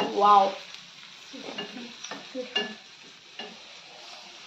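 Wooden spatula stirring and scraping a frying masala mixture in a steel frying pan, in short irregular strokes, over a faint sizzle of the oil.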